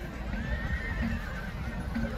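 A horse whinnying, one high drawn-out call of about a second that starts about half a second in.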